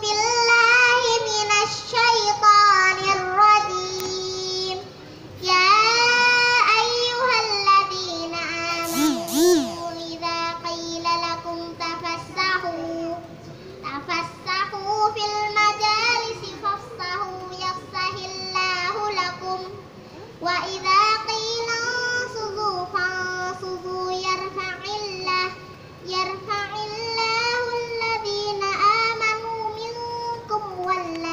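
A young girl singing into a microphone in a single voice. She holds long, wavering notes in phrases of several seconds, with short breaths between them.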